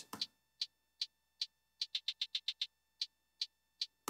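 Programmed trap hi-hats playing solo: two hi-hat samples, one pitched down, set on the offbeats. They tick at an even pace with a quick roll of fast ticks near the middle.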